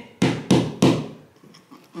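Three sharp knocks in quick succession, about a third of a second apart, each ringing briefly.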